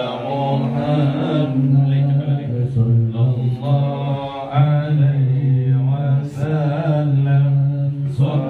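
A group of men chanting Islamic devotional verses (sholawat) together in unison, in long drawn-out phrases with short breaks between them.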